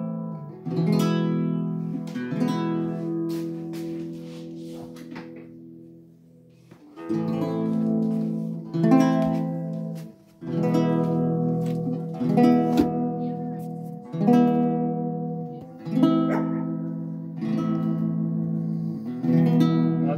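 Nylon-string classical guitar strummed in chords, each left to ring for a second or two. The playing fades about a third of the way in, picks up again, breaks off abruptly about halfway, then resumes, sounding not so in tune anymore after the guitar is taken out into sub-zero cold.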